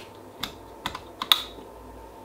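Switches on a decade resistance box clicking as it is set to 10 megohms: about five sharp, separate clicks, the loudest a little past a second in.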